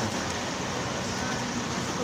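Steady background hiss and rumble with no distinct events.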